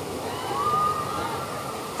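Artificial waterfall rushing steadily, with a thin, high held tone from about half a second in to near the end as the Big Thunder Mountain Railroad coaster goes by.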